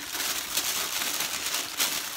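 Packaging rustling and crinkling as a boxed ornament is handled and pulled out, with a sharper crackle near the end.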